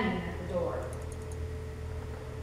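A woman's reading voice ends a phrase and pauses over a steady low electrical hum, and a short run of faint, rapid clicks sounds about a second in.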